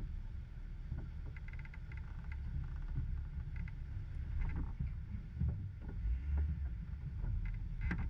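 Low, uneven rumble of an off-road vehicle's engine running slowly at a creek crossing, heard through a hood-mounted camera with wind buffeting the microphone, and a few scattered clicks.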